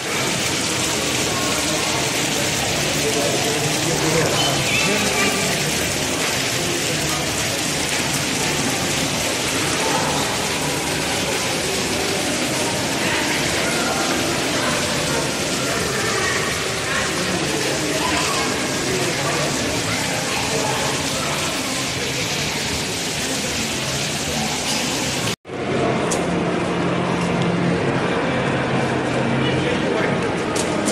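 Shopping-mall ambience: a steady hiss of splashing fountain water with crowd chatter underneath. It cuts out for an instant near the end, then carries on as duller hall ambience with voices.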